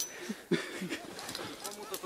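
Brief snatches of a person's voice, with no clear words, over a steady outdoor hiss as a climber slides down a snowy couloir.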